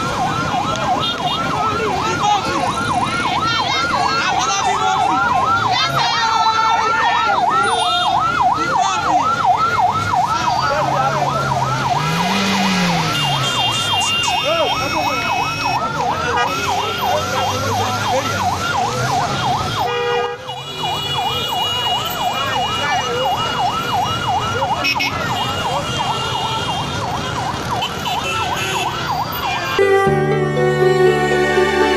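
Police escort vehicle's siren wailing in a fast up-and-down yelp, several cycles a second, running on steadily with a brief dip about twenty seconds in.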